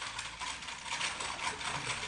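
Typewriter being typed on: a rapid, continuous run of key clicks.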